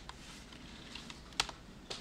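A few separate keystrokes on a computer keyboard while code is typed. The loudest comes about one and a half seconds in, with another just before the end.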